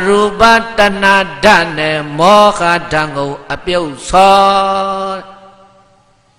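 A man's voice chanting Buddhist verses in short phrases, holding long notes at nearly one pitch; the chant fades out about five seconds in.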